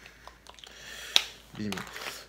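Small handling noises of an e-liquid bottle and dripper atomizer: light clicks and a rising rustle, ending in one sharp click about a second in.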